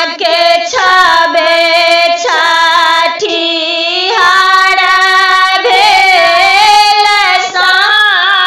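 A woman singing a Maithili Sama-Chakeva farewell song (samdaun) solo with no instrument, in long held, ornamented phrases.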